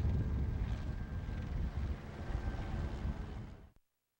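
Outdoor ambient rumble, a steady noisy low hum with no distinct events, fading out to silence shortly before the end.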